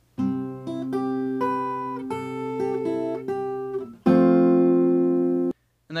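Acoustic guitar with a capo, fingerpicking a riff of single notes over held bass notes. About four seconds in a louder chord is struck and rings until it cuts off abruptly a second and a half later.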